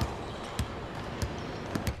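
A basketball bouncing on an indoor court floor, four short thumps at uneven spacing, the last two close together, with the court's room echo behind them.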